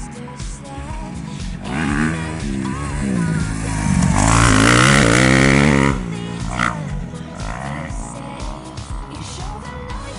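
Motocross bike engine revving up and down as it rides past, loudest about four to six seconds in, over background music.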